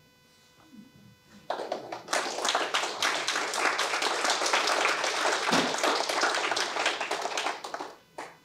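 A small audience applauding, starting about a second and a half in and dying away near the end.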